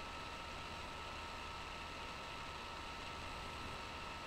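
Steady background hiss with two faint, steady high whining tones running through it; nothing else happens.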